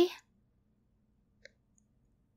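A woman's voice ends a rising, questioning word just at the start, then a roleplay pause: near silence over a faint steady low hum, with one short faint click about one and a half seconds in.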